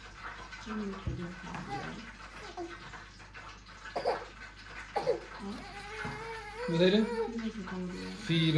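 Low talking with a few brief pauses, two light knocks about four and five seconds in, then a voice rising and falling in pitch near the end.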